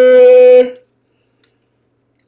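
A man's voice holding one long, steady, sung-out note as he draws out the end of a called-out name, cutting off under a second in and leaving silence.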